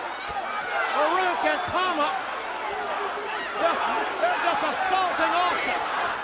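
Wrestling arena crowd yelling and shouting, many voices overlapping, with a couple of dull thumps in the first two seconds.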